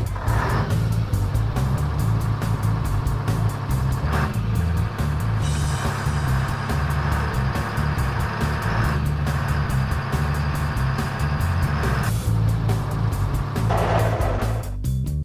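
Cartoon truck engine sound effect, the heavy lorry running steadily as it drives, over background music.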